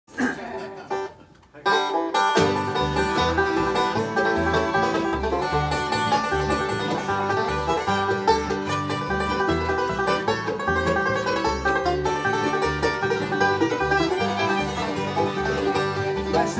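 Bluegrass band playing an instrumental passage, led by a five-string banjo with acoustic guitar, fiddle and an upright bass keeping a steady beat. The band comes in at full volume about a second and a half in.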